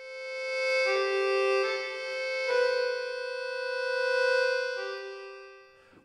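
Sampled accordion software instrument played from a keyboard. Its sustained chords swell up from silence, change a few times, and fade away near the end, the player riding the dynamics control.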